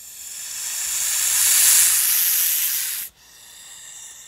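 Horned viper hissing: one long, loud hiss that swells and then cuts off abruptly about three seconds in, followed by a quieter hiss.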